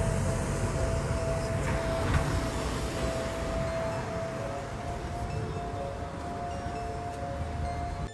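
A steady, high-pitched tone held unbroken over a faint, even background hiss and rumble.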